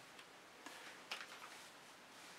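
Near silence, with a few faint light ticks from a painted canvas being handled.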